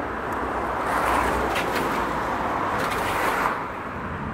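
A car passing on the road: a steady rush of tyre and engine noise that swells about a second in and eases off near the end.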